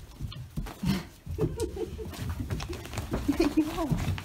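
Dogs moving and scuffling about on straw bedding, with rustling and clicks of movement and low, wavering vocal sounds from about a second and a half in.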